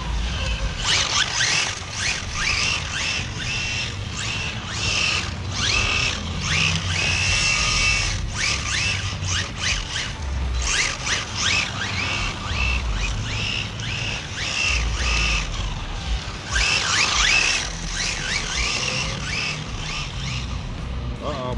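Radio-controlled drift cars running at high speed on asphalt, their motors whining in quick rising and falling sweeps as the throttle is worked, over a steady scrub and rumble from the tyres.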